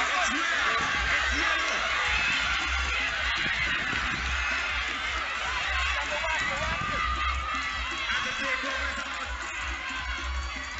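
Crowd of spectators shouting and cheering over one another, with music playing from loudspeakers and its bass beat pulsing underneath.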